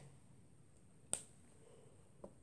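A single sharp snap of a rubber loom band against the fingers about a second in, as the bands are looped and pulled over them.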